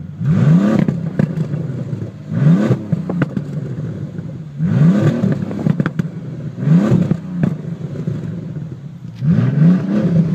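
Bentley Continental GT engine blipped five times, about every two seconds, each rev rising quickly and falling back to a steady idle. A few sharp pops from the exhaust follow as each rev drops.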